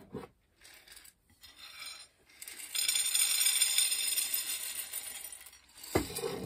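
Dried navy beans poured from a half-gallon glass jar onto a plate, a dense rattling clatter of many small hard beans that runs for about three seconds from midway through. A few light ticks of beans being handled come before it.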